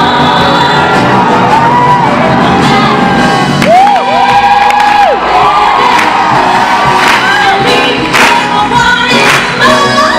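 Two women singing a Broadway-style show tune over a live orchestra, with one long held note about four seconds in that slides up into it and drops off at the end. Audience cheering over the music, with sharp hits coming in from about seven seconds on.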